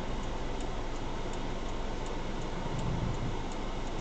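Steady engine and road noise inside a moving car's cabin, with the turn-signal indicator ticking lightly and regularly for a lane change to the right.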